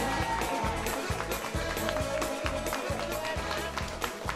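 Music with a steady, driving beat and a held melody.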